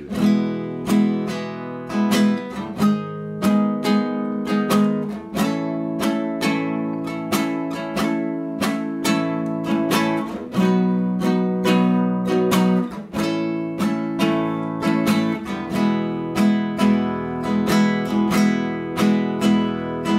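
Nylon-string cutaway acoustic guitar strummed in a steady, bluesy rhythm pattern, with the chords changing every few seconds.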